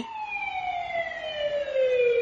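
Emergency-vehicle siren wailing: one long tone gliding slowly down in pitch.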